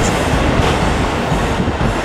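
KiHa 85 series diesel railcars pulling away under power, their diesel engines running with steady wheel-on-rail noise as the train draws off.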